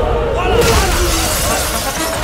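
A glass table top smashing in a fight: a burst of shattering glass about half a second in, with a voice and music underneath.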